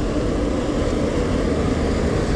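Heavy dump truck approaching on a dirt construction road, its diesel engine a steady low rumble.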